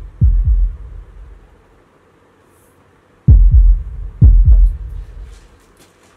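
Heartbeat sound effect: deep, loud double thumps, lub-dub, heard three times with long irregular gaps between them.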